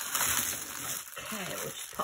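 Small clear plastic zip bags of diamond-painting drills crinkling as they are pressed flat and gathered up by hand. A short murmur of voice comes about halfway through.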